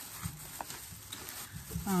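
Light handling of packaged craft supplies: a few soft taps and faint rustles as sticker packets are picked up and moved.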